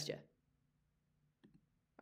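Near silence in a small room, broken by two faint short clicks about one and a half seconds in: a computer mouse clicking to advance a presentation slide.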